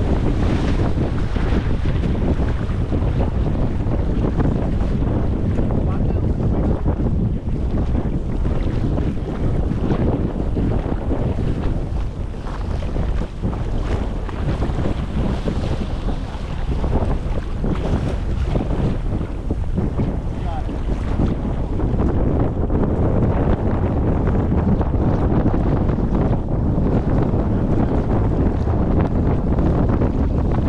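Strong wind buffeting the microphone, a steady low rumble, over choppy water with waves splashing.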